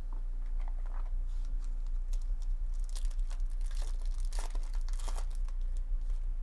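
Foil wrapper of a Bowman baseball card pack crinkling as it is torn open by hand, the crackle thickest from about three to five seconds in, over a steady low electrical hum.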